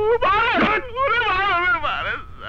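A man wailing and crying out in pain, his voice wavering up and down in long drawn-out cries, as he is beaten with a stick.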